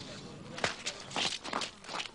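Speed skates' blades scraping on natural ice in a quick run of short strokes as skaters push off from the start of a race, beginning just over half a second in.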